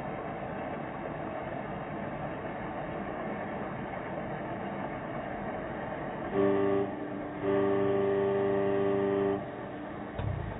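Steady traffic hum, then a car horn honks twice: a short honk a little past six seconds in and a longer one of about two seconds shortly after.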